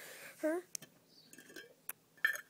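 A short spoken word, then a few faint sharp clicks from a plastic jar being handled.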